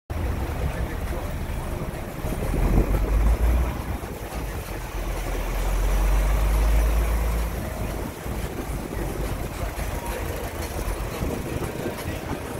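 Heavy diesel engines of a bus and a fuel tanker truck idling in stopped traffic: a deep, steady rumble. It swells twice, around the third second and again from about five to eight seconds, then eases.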